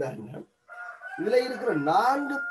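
A long drawn-out call with a held high note, starting just under a second in and lasting about two seconds, the kind a bird such as a fowl makes, over a person's speaking voice.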